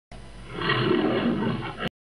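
A big cat's roar sound effect, swelling about half a second in and cutting off abruptly just before the end.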